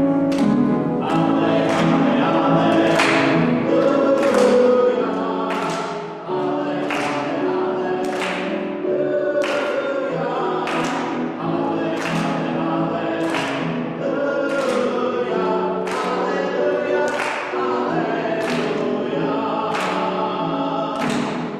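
Church congregation singing a song together, with a sharp, even beat about twice a second.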